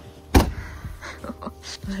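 A car's boot lid slammed shut: one loud thud about half a second in, followed by a few lighter knocks and scrapes.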